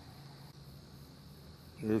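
A faint, steady high-pitched drone over quiet background noise. A man's voice starts near the end.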